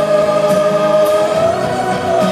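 Symphonic metal band playing live, the female lead singer holding one long, steady note over the band.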